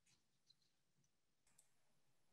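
Near silence, with two faint clicks, about half a second and a second and a half in.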